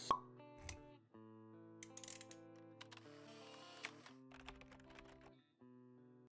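Faint intro jingle of soft held electronic music notes. It opens with a sharp pop and has a few light clicks and a brief swish along the way.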